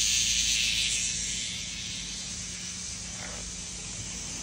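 A cicada buzzing in a steady, hissing drone, the distress buzz of a cicada caught and batted by a cat. It is loudest at first, eases over the first couple of seconds and carries on more weakly.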